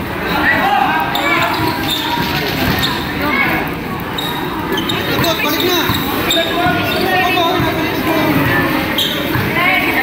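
A basketball being dribbled and bounced on a painted court floor during a game, a run of short thuds, under a steady layer of spectators' voices and shouts.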